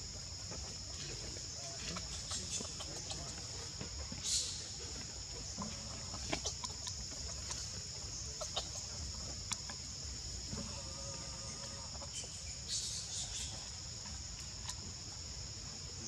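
Steady, high-pitched drone of insects, with scattered faint clicks and a couple of short calls, one of them a brief pitched call about two-thirds of the way through.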